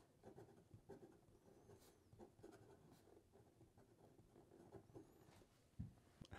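Faint scratching of a fine stainless steel fountain pen nib writing on paper, a run of short pen strokes.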